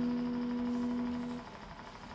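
A single steady note, low-mid in pitch, held for about two seconds and fading slightly before it cuts off sharply about one and a half seconds in.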